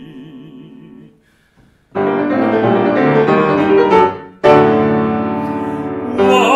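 A baritone's held sung note with vibrato fades away, and after a brief pause a grand piano begins an introduction with full sustained chords, a new loud chord struck about four and a half seconds in.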